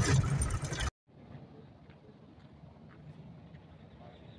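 Driving noise of a truck on a gravel road, heard from inside the cab, cut off abruptly about a second in. After that there is only a faint, even outdoor background with a low hum.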